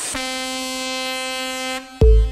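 A single held, horn-like electronic tone in a house-music DJ mix, sounding on its own with no beat under it. It cuts off near the end, just before the drums and bass come back in.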